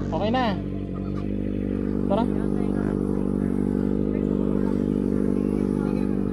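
Kawasaki ZX-6R's inline-four engine idling steadily, with brief voices over it.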